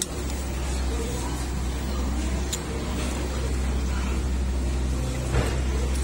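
Steady low background rumble, with a sharp click about two and a half seconds in and a brief louder knock near the end.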